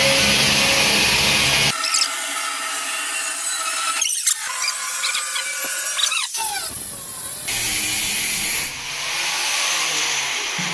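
Handheld angle grinder cutting into the edge of a sheet-metal door, a loud continuous screech with the pitch gliding as the disc bites and eases. The sound changes abruptly several times.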